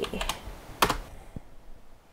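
Typing on a computer keyboard: a few separate keystrokes, the sharpest a little under a second in, that stop about a second and a half in.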